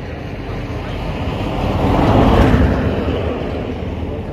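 A motor vehicle passing by on the road, its noise swelling to a peak a little after two seconds in and then fading away.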